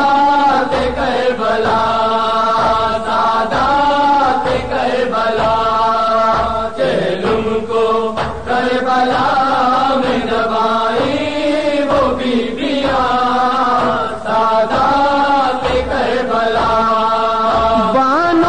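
A voice chanting a noha, an Urdu mourning lament for Imam Hussain, in long held, wavering notes, with a faint low beat about once a second underneath.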